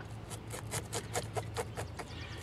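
A blade scraping the scales off a small bluegill in quick short strokes, about six rasps a second.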